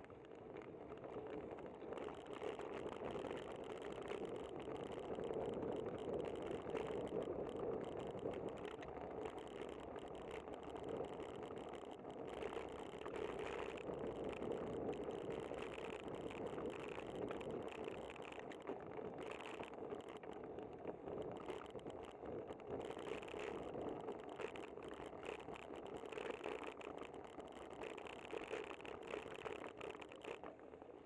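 Steady rolling noise of a bicycle ride on city pavement, picked up by a bike-mounted camera: tyre hum with the rattle of the bike and mount. It grows louder about two seconds in as the bike picks up speed.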